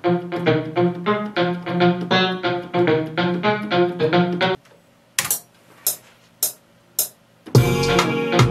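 A software electric-guitar sound played from a MIDI keyboard in a quick, even pattern of plucked notes over the beat. It stops about halfway through, leaving four short, sharp percussion hits evenly spaced. Just before the end the full beat returns with deep bass.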